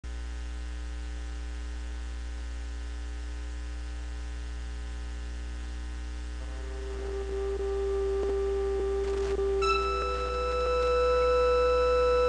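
Steady electrical mains hum from the sound feed. About halfway through, long sustained keyboard notes fade in, and a higher chord of held notes joins near the end, like an organ-style music intro starting.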